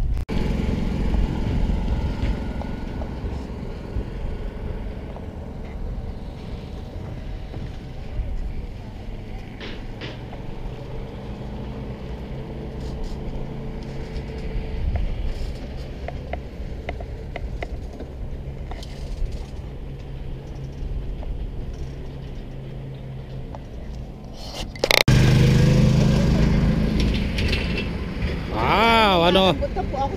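Wind buffeting a handheld camera's microphone outdoors: a gusty low rumble that jumps louder about 25 seconds in.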